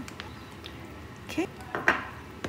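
Mostly quiet, with a few faint light clicks from fingers crumbling solid coconut oil over cake mixture in a metal tin. A woman says "okay" in the second half, and that word is the loudest sound.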